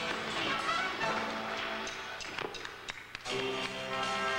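A live stage band with drums and electric guitar playing sustained instrumental chords. A little after two seconds in, the music thins to a few sharp drum hits and a brief dip, then the full band comes back in.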